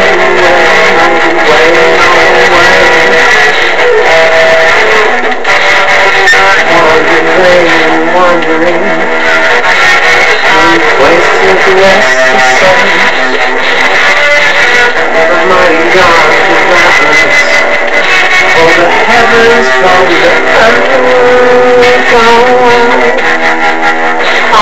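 Electric guitar played loudly and continuously in an instrumental passage, with notes that waver and bend.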